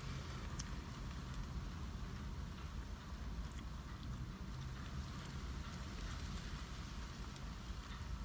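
Steady low rumble inside a car, with a few faint clicks scattered through it.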